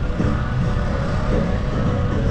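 Steady low rumble of city traffic, with faint music in the background.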